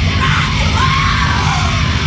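Lo-fi black metal-punk music: a dense, distorted wall of band sound with yelled vocals gliding over it.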